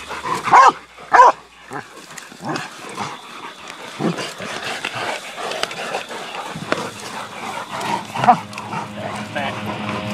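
Catch dogs and a caught wild hog crying out during the catch: two loud short cries about half a second and a second in, then scattered smaller cries and scuffling. Music comes in near the end.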